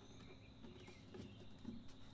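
Near silence with a few faint clicks and rustles of a saddlebag liner panel being pulled back inside a motorcycle saddlebag.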